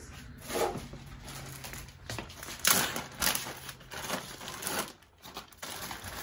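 Plastic bag of tile spacers crinkling as it is handled and rummaged through, with two louder crackles about halfway through.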